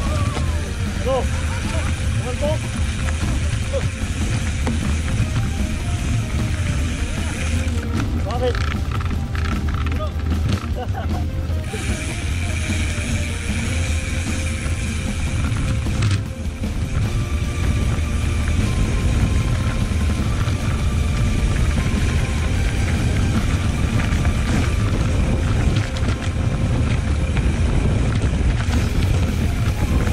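Mountain bike riding down a dirt forest trail as heard from a handlebar-mounted camera: steady wind buffeting and trail rumble, changing abruptly where the footage is cut. Music and some voices sound over it.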